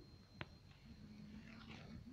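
Near silence: faint room tone with a high steady tone and a single faint click about half a second in.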